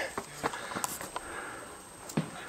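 Faint footsteps on a dirt and gravel surface with handling noise from a handheld camera, a few soft clicks about half a second apart over a low outdoor background.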